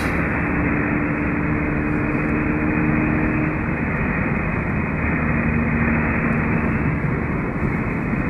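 Steady road and engine noise inside a car's cabin while it cruises along a highway: tyre rumble on asphalt with a low engine hum.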